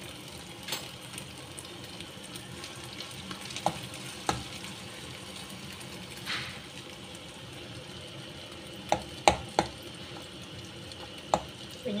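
Egg and leafy vegetables frying in oil in a nonstick pan, with a steady sizzle. A fork clicks against the pan about six times, mostly in the second half.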